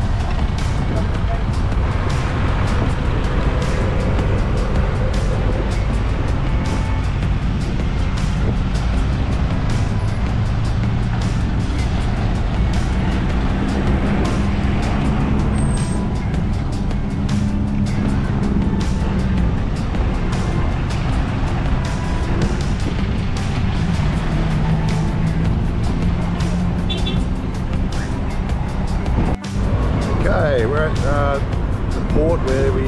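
Vehicle engines running as a van and then a box truck drive off a car ferry's loading ramp, a low engine hum coming and going over constant busy background noise.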